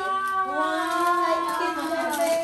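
Voices singing or crooning long held notes, two of them overlapping and gliding slowly in pitch.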